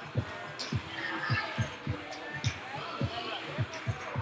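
Basketballs bouncing on a hardwood gym floor: irregular dull thuds, about two or three a second, echoing in the hall.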